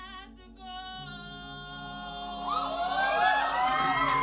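Mixed a cappella choir singing: a female soloist holds a note over low sustained voices that come in about a second in. Past the middle, many upper voices join with overlapping slides up and down, and the sound swells louder.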